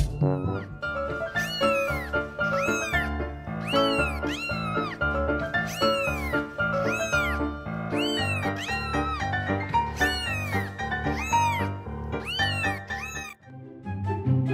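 Cat meowing over and over, about once a second, each meow rising and then falling in pitch, over background music.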